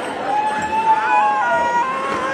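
Young male voices chanting in unison during a Konyak log drum performance, holding one long note that steps up in pitch about a second in, over a faint low beat.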